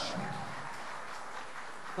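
Audience applauding with crowd murmur in a hall, a steady, fairly soft clatter just after a live band's final chord has died away.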